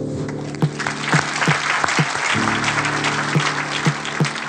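Audience applause over sustained chords of soft instrumental music, following a speaker's thanks.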